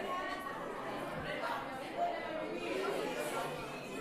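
Indistinct chatter of several students talking at once, with no words clear.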